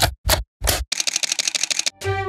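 Camera shutter firing: single shots about a third of a second apart, then a rapid burst of shutter clicks for about a second.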